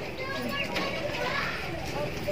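Faint voices talking in the background, with no one speaking close by.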